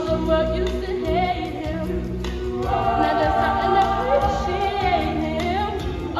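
A chorus of young voices singing a musical-theatre number together over instrumental accompaniment, with long held notes in the middle.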